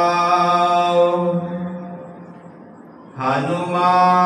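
A man's voice chanting Gurbani aloud in a slow, melodic recitation. He holds a long sustained note at the end of a line that fades out about two seconds in. After a brief pause he begins the next line on another long held note.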